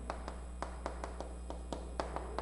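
Chalk writing on a chalkboard: an irregular run of light, faint taps and clicks, about five a second, as the chalk strikes the board with each stroke of the characters.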